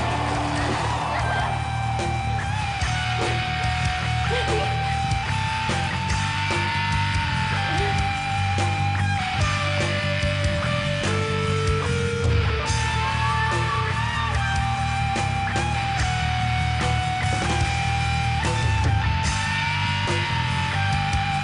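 A live metal band playing an instrumental passage: distorted electric guitars, bass and drums, with a lead line of long held notes over the top.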